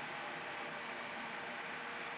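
Steady, even background hiss with no distinct events: a faint ambient noise floor.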